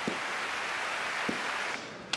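Large arena crowd making a steady wash of noise, fading away near the end.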